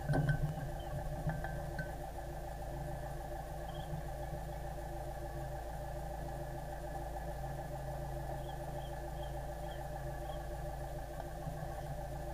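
Sailboat's inboard engine running steadily at low speed, a constant hum. A few short knocks come in the first second.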